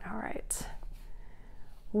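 A brief whispered, breathy mutter with a mouth click, lasting about half a second at the start. Then faint room tone until normal speech begins at the very end.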